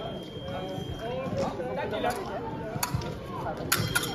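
Background chatter of many voices in a large sports hall, with a few sharp clicks or taps scattered through it.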